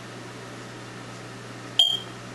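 Dry-erase marker squeaking once, briefly and sharply, on a whiteboard near the end, over a steady low electrical hum.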